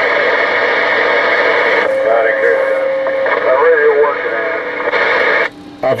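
A CB radio receiving replies to a radio check: distant voices buried in heavy static come through the radio's speaker. The static changes character about two seconds in and cuts off abruptly near the end.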